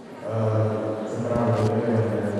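A young man's voice through a handheld microphone and PA holds a steady low hummed drone, beatbox-style. The drone is broken about a second in by a couple of sharp clicks and short hissing percussive bursts.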